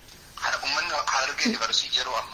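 A person speaking after a brief pause, the voice sounding thin, like speech over a telephone line.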